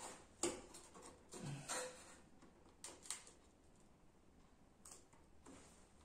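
A few faint, scattered taps and light handling noises as a hollow styrofoam model building is turned and set against the cutting mat.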